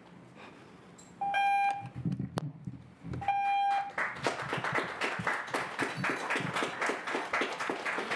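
Two electronic beeps, each about half a second long and two seconds apart, from the podium speaking timer. From about four seconds in, the audience applauds.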